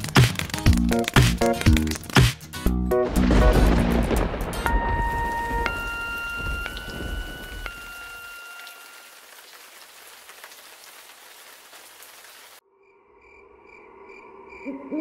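A cartoon song's backing music ends in a thunderclap. Steady rain follows, with a few high chime notes over it. The rain fades and then cuts off suddenly near the end.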